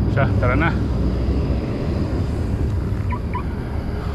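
Steady low wind rumble on the microphone of a handlebar-mounted camera, with tyre noise from a mountain bike rolling along a paved path.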